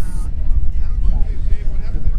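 Wind buffeting the microphone, a loud uneven low rumble, with faint voices in the background.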